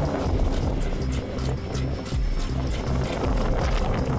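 Background music with a steady beat over held bass notes.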